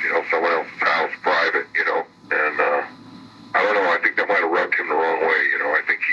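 A man talking in an interview, continuous conversational speech with a brief pause about three seconds in.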